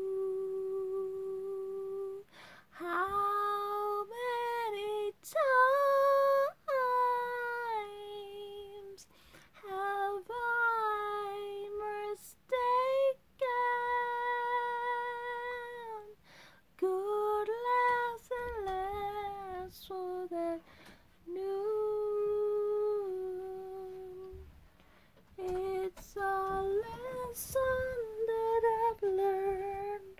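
A woman singing a slow ballad unaccompanied, in long held notes with short breaths between phrases.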